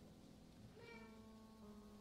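Near silence: room tone with a faint, steady held tone coming in just under a second in.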